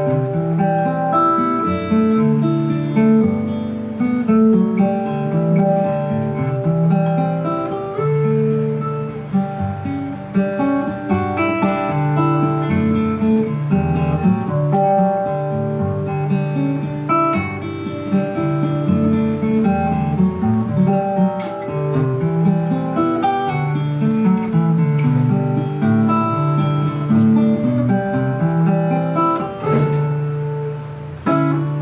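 Solo acoustic guitar playing an instrumental tune: a steady stream of plucked melody notes over moving bass notes, with no singing.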